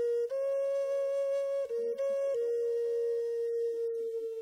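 Background music: a flute playing a slow melody of long held notes that step up and down a little, settling on one long note near the end.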